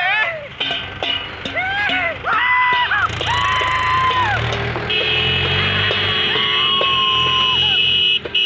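People's voices calling out in long, drawn-out shouts held on one pitch for about a second each. A steady high-pitched tone joins about five seconds in and runs on under the calls.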